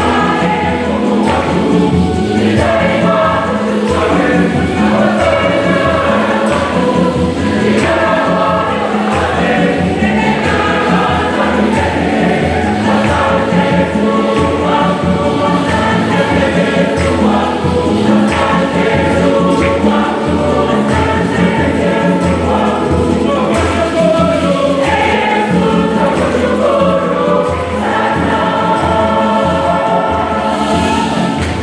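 Church choir singing a hymn, many voices together over accompaniment with a steady beat.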